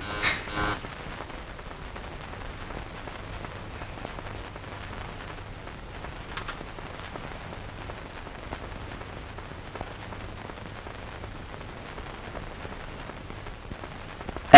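Steady hiss with a low hum from an old film soundtrack, with no dialogue or music, and a few faint ticks.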